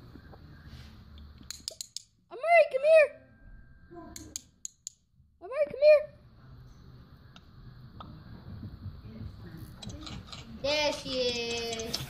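A handheld dog call sounded twice, each time as two quick rising-and-falling toots, about three seconds apart, with a few light clicks between. A voice-like sound comes in near the end.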